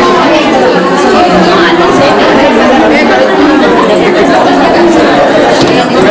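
Chatter of many people talking over one another, a steady unbroken hubbub of voices.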